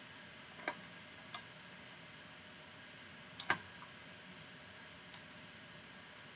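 Computer mouse clicking: about five sharp, separate clicks, the loudest a quick pair about halfway through, over a faint steady room hiss.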